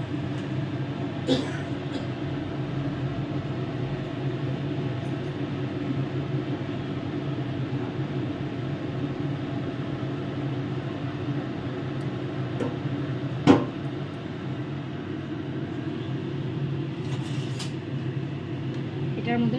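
A steady low mechanical hum, with a small click about a second in and one sharp clank of an aluminium pot lid being set on the biryani pot about 13 seconds in.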